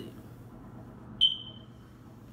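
A single short high-pitched ping about a second in, starting sharply and fading away over about half a second, over faint room tone.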